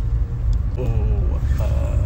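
Steady low rumble of a car cabin, heard from inside the car.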